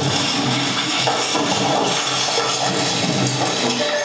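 A film soundtrack played back over speakers: music with steady low tones under a dense, noisy layer of sound. It stops abruptly at the very end.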